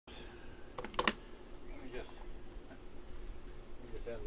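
Three sharp clicks in quick succession about a second in, followed by a faint voice, over a low steady hum.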